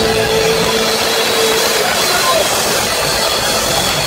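Live rock band on an amplified stage between drum beats: one held electric-guitar note rings for about the first two seconds, then a loud, steady wash of noise carries on with no drum beat.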